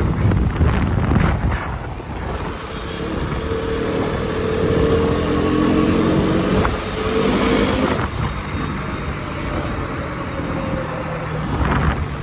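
Motorcycle engine running on the move, with wind on the microphone, loudest in the first two seconds. The engine note swells through the middle and falls away about eight seconds in.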